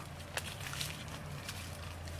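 Quiet outdoor background with a steady low hum and a few faint, scattered clicks.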